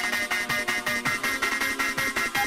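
Hard dance music from a DJ mix in a breakdown without the kick drum: fast, even percussion at about eight hits a second under a high synth riff.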